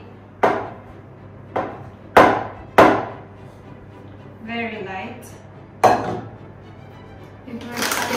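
Sharp knocks on a stainless steel mixing bowl as soft proofed dough is tipped and knocked out of it: four knocks in the first three seconds, then one more about six seconds in.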